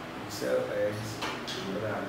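A man speaking, answering an interview question.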